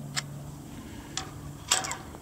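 Handheld electric-fence fault finder and remote held on the fence wire: a few sharp clicks about a second apart, the last a quick double, over a faint steady low hum. Its reading shows zero, with the fence switched off.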